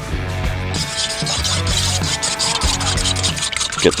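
Background music with held notes. From about a second in, a fork clicks and scrapes against a stainless steel bowl as raw eggs are beaten.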